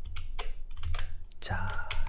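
Light clicks of computer keyboard keys, about eight irregularly spaced taps over a faint low hum.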